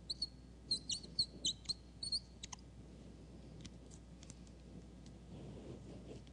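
Whiteboard marker squeaking in short strokes on the board: a quick run of high squeaks and clicks over the first two and a half seconds, then a few fainter ticks.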